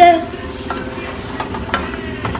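A cooking utensil stirring food in a skillet, with a few light clicks against the pan.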